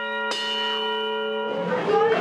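A sustained bell-like chime, struck again about a third of a second in and ringing steadily, then giving way to children's chatter about a second and a half in.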